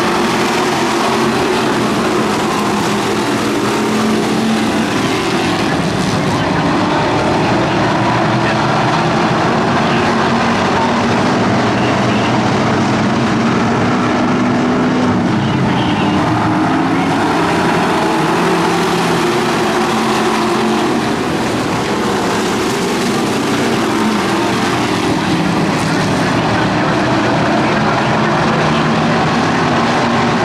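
A pack of street stock race cars running flat out on a dirt oval. Their engines blend into one continuous loud roar, with pitches that rise and fall as the cars accelerate and lift through the turns.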